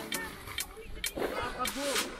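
Several people's voices talking, over sharp clicks that come about twice a second.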